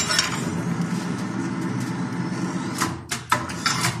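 Steel tube being bent around the scroll die of a hand-operated bending machine: a steady grating of metal on metal for about three seconds, then a few sharp metallic clicks near the end.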